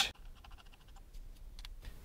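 A metal atomizer being screwed onto a vape box mod's threaded connector: a faint run of quick, light ticks from the threads turning.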